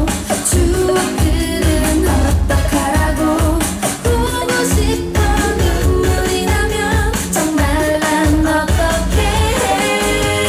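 Upbeat K-pop dance song with female group vocals over a steady bass beat, played loud through a concert sound system.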